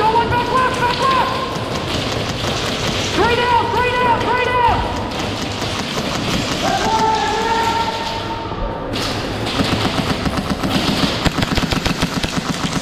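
Airsoft guns firing rapid strings of shots, thickest over the last few seconds, with players' shouted calls over the gunfire.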